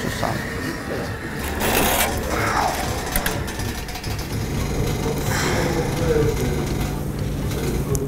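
Foundry noise during a pour of molten metal into a sand mould: a steady rushing roar with a few sharp clinks about three seconds in, and a low steady hum joining in the second half.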